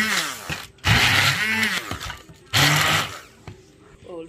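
Hand-held stick blender blending chopped onion and herbs, run in three short bursts, its motor pitch rising and falling within each burst.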